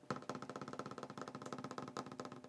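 Fingers drumming on a wooden tabletop: a fast, even roll of taps that starts suddenly.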